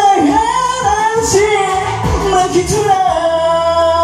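Karaoke backing track with a steady drum beat and a voice singing the lyrics over it, settling into one long held note near the end.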